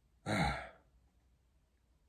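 A man's single short, breathy sigh about a quarter of a second in, falling in pitch, followed by near silence.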